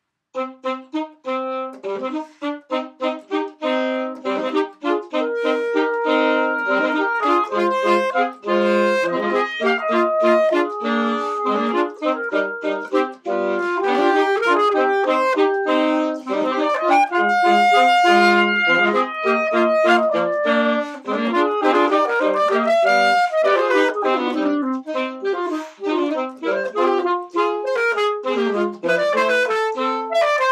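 Several saxophone parts, all multitracked by one player, playing a composed piece in harmony. It opens with short detached notes for the first few seconds, then moves into longer held notes and moving lines.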